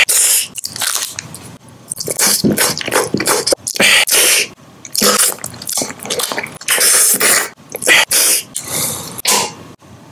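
Close-miked eating sounds of candy being bitten and chewed: a quick run of crunchy, wet mouth noises, each a fraction of a second long, with short gaps between them.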